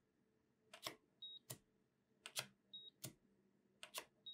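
A coating-thickness gauge probe set down and lifted on a calibration foil over a steel reference block, making light clicks, with a short high beep from the LEPTOSKOP gauge as each reading is recorded. The beep comes twice, about one reading every second and a half.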